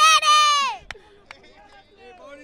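A man's drawn-out shout of 'taller', falling in pitch as it ends, followed by a single sharp click.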